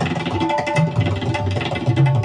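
Tabla played at great speed: a dense run of rapid strokes on the small treble drum, ringing at a steady pitch, while the large bass drum's pitch bends up and down.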